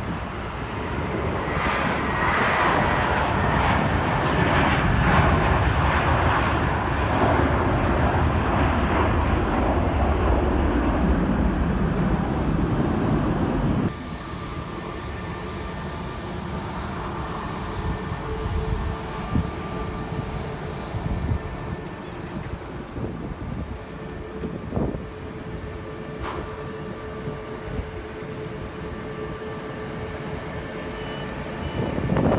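Jet airliner engines running loudly for the first half, swelling over the first few seconds. About fourteen seconds in the sound cuts abruptly to a quieter, steady jet engine noise with a thin whine from a taxiing airliner.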